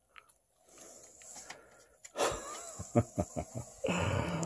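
A man laughing under his breath, starting about halfway through, in short pulses about five a second that build into open laughter.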